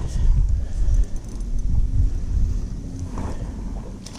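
Wind buffeting the microphone: an uneven low rumble in gusts, strongest in the first two seconds, then easing.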